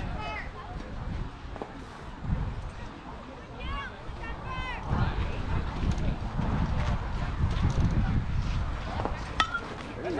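Wind rumbling on the microphone, with faint distant voices calling out now and then. Near the end comes a single sharp smack of the baseball as the pitch arrives at the plate.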